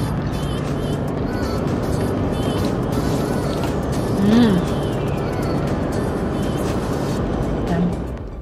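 Steady road and engine noise inside a moving car's cabin, with music playing over it.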